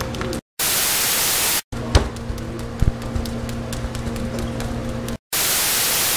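Two bursts of TV static white noise, each about a second long, used as a cut between clips. Between them a steady low hum with scattered clicks and a couple of sharp knocks.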